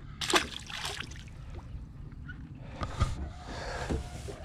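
A small bream thrown back into the river lands with a short splash about a quarter-second in. Low water noise follows, with a single knock about three seconds in.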